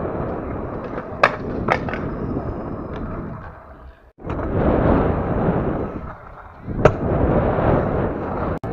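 Stunt scooter wheels rolling over skatepark concrete with a steady rumble, broken by a few sharp clacks of the scooter striking the ground, twice about a second or so in and once near the end. The rumble drops out for a moment about four seconds in.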